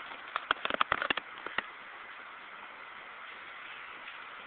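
A quick run of light clicks and taps in the first second and a half, then a steady faint hiss.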